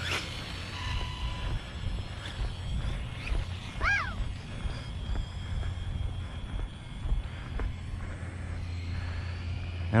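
Gusty wind rumbling on the microphone, with a faint thin whine from the Losi Promoto-MX RC motorcycle's electric motor as it runs away down the road. A brief rising-and-falling chirp comes about four seconds in.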